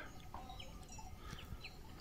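Faint, distant bird calls over a quiet outdoor background: one short call about a third of a second in, then a few brief high chirps after about a second and a half.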